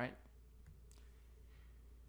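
A few faint clicks of computer keyboard keys in the first second, over a low steady hum.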